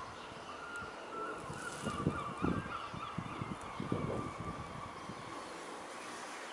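A bird calling outdoors: a drawn-out, wavering cry for about three seconds in the middle, over some low rumbling.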